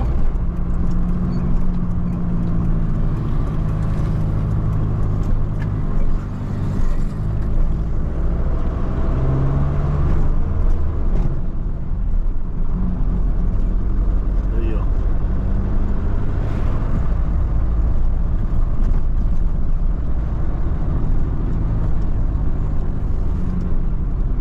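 Diesel engine and road noise heard from inside the cab of a Mercedes-Benz Sprinter van driving through town. The steady low engine hum shifts in pitch a few times as the van changes speed.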